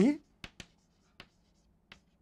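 Chalk on a blackboard as a word is written: four short, sharp taps, two close together about half a second in, one at about a second, one near the end.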